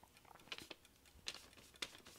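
Near silence with a few faint, irregular clicks and light rustles.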